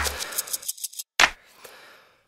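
A run of quick dry clicks and snips as a deep bass note dies away, then a short pause and one sharp click just over a second in.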